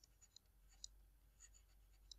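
Near silence with a few faint ticks from a stylus tapping on a drawing tablet as a word is handwritten.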